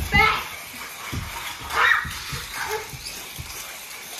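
A child laughing, then short bursts of children's voices and exclamations.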